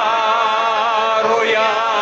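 A man's voice chanting one long held note, with a slight waver in the pitch.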